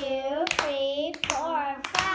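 Children's hands clapping in time, about four claps in two seconds, with a child's voice chanting the count between the claps.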